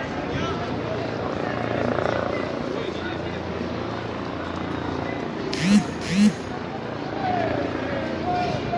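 Street crowd ambience with a helicopter overhead, a steady low rumble under scattered voices. About two-thirds of the way through, a man gives two short, loud shouts in quick succession.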